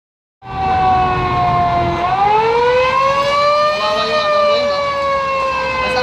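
Fire truck siren wailing slowly, starting about half a second in: the pitch dips a little, rises for about two seconds, then slowly falls, over a low engine rumble.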